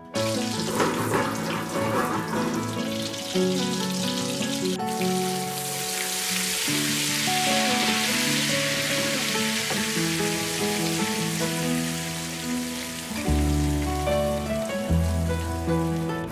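Butter sizzling and bubbling as it melts in a nonstick frying pan, louder in the middle, under background music.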